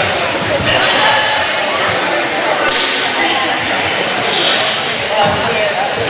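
Karate students working in pairs: scattered sharp slaps of hands on partners' uniformed arms and shoulders, with cotton uniforms snapping on fast strikes. One crack about halfway through is the loudest, over a steady murmur of many voices.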